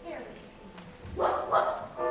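A performer barking like a dog, in short voiced barks a little after one second in and again at the end.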